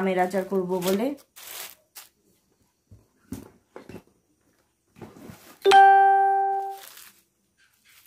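Thin plastic grocery packets rustling and crinkling as they are handled. About six seconds in comes a single bell-like ding with a clear pitch that fades out over about a second.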